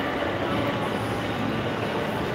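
Steady din of a busy indoor shopping mall: a continuous wash of indistinct crowd noise and echo, with no single event standing out.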